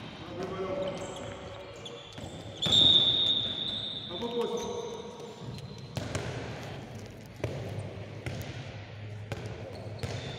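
A handball bouncing and striking the floor of a large, echoing sports hall, amid players' voices. A loud, shrill high sound cuts in about three seconds in.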